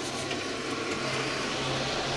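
Electric fan at a blacksmith's forge running steadily: an even rushing hiss with a faint low hum.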